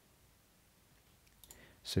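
Near silence broken by a few faint computer mouse clicks about one and a half seconds in, then a man's voice begins right at the end.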